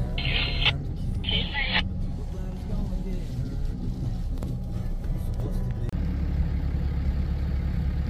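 RAM pickup truck driving on a dirt track, its engine and road noise heard from inside the cabin as a steady low rumble, with background music. The rumble becomes heavier about six seconds in.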